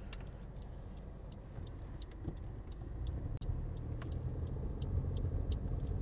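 Low road and engine rumble inside the cabin of a 10th-generation Honda Civic sedan on the move, growing louder about halfway through, with faint light ticks over it.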